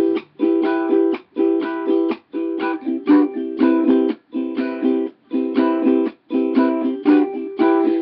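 Ukulele strumming chords, an instrumental passage with no voice. The strums come at about one a second, with short stops between several of them.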